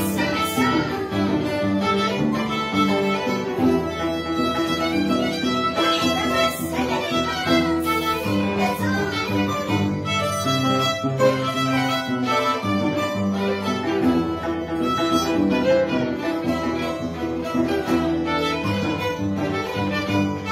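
Violin and Andean harp playing together live: the violin carries the melody over the harp's plucked bass notes and chords.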